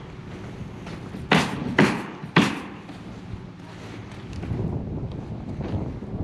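Three sharp bangs about half a second apart, nailing on the roof by the roofing crew, over a steady low mechanical hum; low wind rumble on the microphone near the end.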